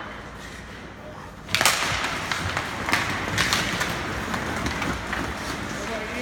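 Ice hockey faceoff: a sharp stick clack about a second and a half in as the puck is dropped and won. Then skate blades scrape and carve the ice, with repeated sharp clacks of sticks on the puck and ice.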